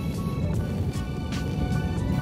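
Background music with steady sustained tones, over a low rumble of wind buffeting the microphone.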